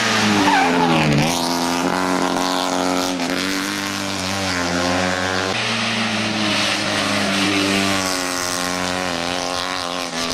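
Steyr Puch 650TR's air-cooled flat-twin engine running hard up a hill climb; its pitch dips sharply about a second in, then climbs again and shifts up and down as the car works through gears and corners.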